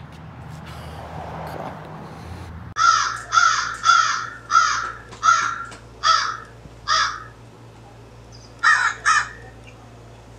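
A crow cawing: a run of seven loud, harsh caws about two-thirds of a second apart, then a quick pair near the end. Before the calls, nearly three seconds of low, steady outdoor background noise.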